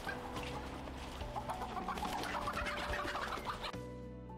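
Chickens squawking and clucking as they are chased and grabbed at; the squawking picks up about a second in and stops abruptly near the end.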